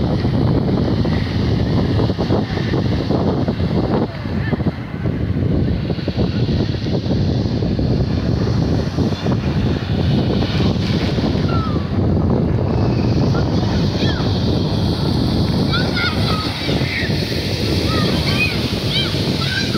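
Ocean surf breaking on a beach, mixed with wind rumbling on the microphone.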